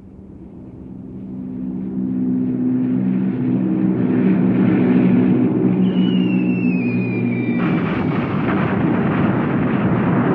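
Low steady drone of bomber engines growing louder. About six seconds in comes the falling whistle of dropping bombs, then from just before eight seconds a sustained rumble of bomb explosions.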